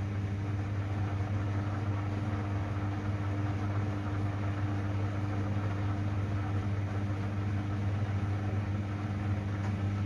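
Samsung front-loading washing machine draining: the drain pump hums steadily under the sound of rushing water.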